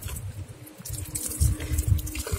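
Water running from the spout of a Roman cast-iron street drinking fountain (nasone), splashing over a cupped hand and onto the pavement.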